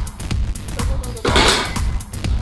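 Electronic dance music with a steady beat, cut through about a second and a quarter in by a sudden loud crashing burst as a wooden-stick truss bridge gives way under hanging weight plates.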